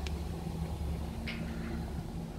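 Steady low hum of an idling car engine, with a brief soft rustle about a second and a half in.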